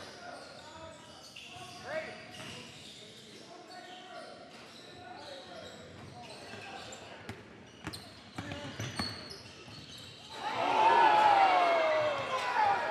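Gym noise of a basketball bouncing on a hardwood court with scattered chatter and a few sharp knocks, then about ten seconds in a sudden loud burst of shouting from players on the sideline, with a long falling 'ooh', reacting to a play.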